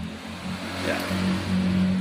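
A motor vehicle's engine running nearby, a steady low drone under a rush of noise that grows steadily louder.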